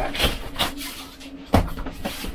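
RV dinette back cushions being pulled off and handled, with scuffing and rustling, then a single sharp thump about one and a half seconds in as a cushion is set down on the tabletop.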